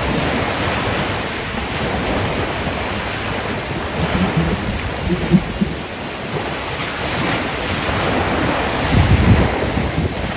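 Small waves breaking and washing up onto a sandy beach, a steady rush of surf. Wind buffets the microphone with low rumbles, strongest near the end.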